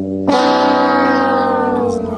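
Sad trombone sound effect: the long final note of the comic 'wah-wah-wah-waah', sinking slowly in pitch and fading near the end, a joke cue for a letdown.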